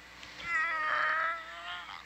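A person's voice holding one long, high, slightly wavering drawn-out sound for about a second and a half, a long-stretched 'maybe' that the next speaker calls 'a big maybe'.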